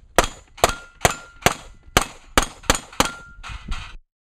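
A rapid string of about ten gunshots, roughly two or three a second, several followed by the brief ring of steel targets being hit. The sound cuts off suddenly at the end.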